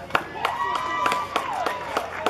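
Hands clapping steadily, about three claps a second, while a voice calls out a long drawn-out cheer in the middle of the clapping.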